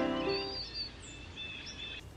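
Music fading out in the first half second, then birdsong: a run of short, high chirps and warbles.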